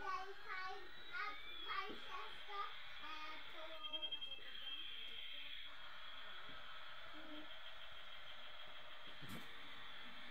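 Light-up toy airliner's electronic sound effect: a steady high whine with slow falling pitch sweeps, under a young child's voice for the first few seconds.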